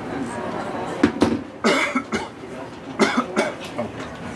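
A person coughing several times in sharp bursts, about a second in, again near two seconds and around three seconds, over a murmur of voices.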